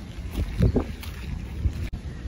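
Wind buffeting the microphone outdoors: a low rumble with gusts, the strongest about half a second in, broken by a brief dropout near the end.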